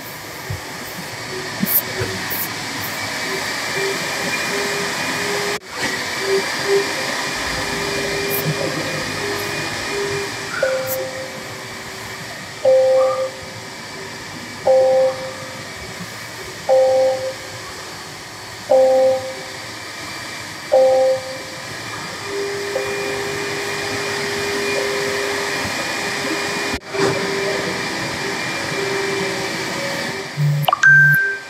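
A steady blowing hiss, as from the electric car's ventilation fan, runs throughout. Through the middle a short two-note electronic chime sounds about six times, roughly two seconds apart, like a vehicle warning chime.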